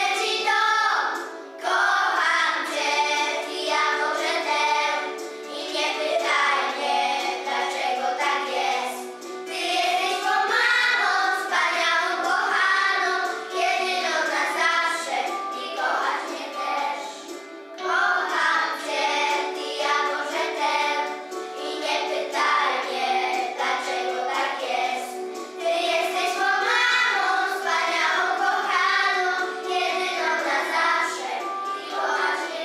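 A group of young children singing a song together as a choir, phrase after phrase with brief pauses between lines.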